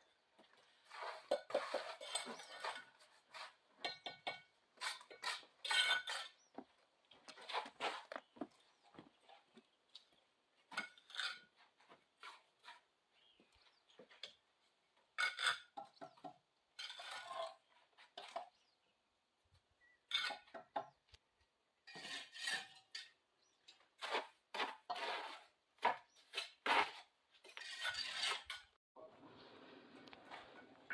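Scattered clinks and knocks of hollow clay bricks being handled and set in a wall during bricklaying, short sharp sounds separated by brief pauses.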